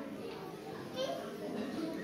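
Faint children's voices chattering in the background of a large hall, heard during a pause in a man's amplified speech.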